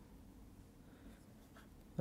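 Faint scratching and tapping of a stylus on a tablet screen as a word is handwritten, over quiet room tone.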